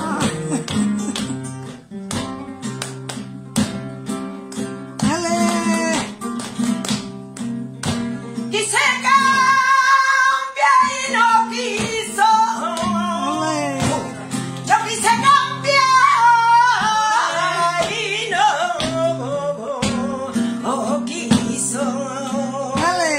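Flamenco guitar playing a soleá with sharp strummed chords. From about nine seconds in, a woman sings the cante over it in long, wavering, ornamented lines.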